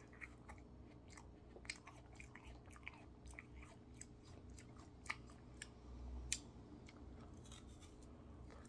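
Faint close-up mouth sounds of a person chewing a peach ice cream bar: irregular soft clicks and smacks, with the sharpest click about six seconds in.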